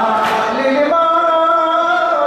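A crowd of men chant a latmiya, a Shia mourning chant, in unison, rising about half a second in and then holding one long note. A single sharp slap, a hand striking a chest, comes near the start.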